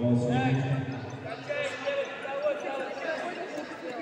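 Background voices of several people talking and calling out in a large sports hall, with no single clear voice in front.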